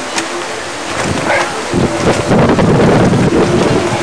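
Wind buffeting the camera's microphone, growing stronger about halfway through.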